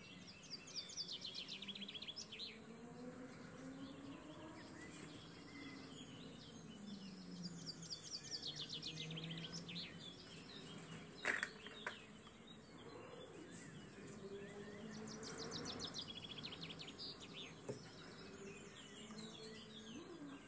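A flying insect buzzing, its pitch wandering up and down, with several short bursts of fast, high bird trills and a sharp click just past halfway.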